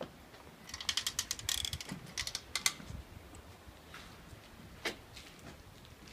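Metal-framed glass entrance door being opened: a quick run of sharp metallic clicks and rattles from its handle and latch for about two seconds, then a single click a few seconds later.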